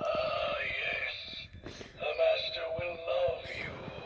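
Gemmy animated reaper head prop talking through its small built-in speaker in an electronically altered, spooky voice, reciting one of its Halloween phrases.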